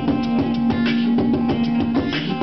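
Acoustic guitar playing along with vocal beatboxing into a handheld microphone: a steady run of percussive clicks and thumps with sharp hissing accents a little over once a second, over a held low note.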